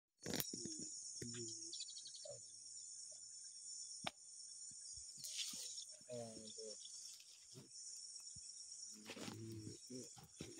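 Insects chirring steadily at a high pitch, with faint voices talking underneath.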